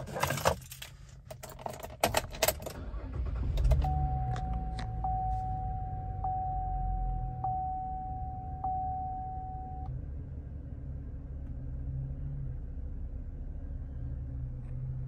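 Ignition keys jangle and click for the first few seconds. Then the 2014 Camaro's 3.6-litre V6 starts and settles into a low, steady idle. A single-pitched warning chime dings about every second for some six seconds from the start, then stops.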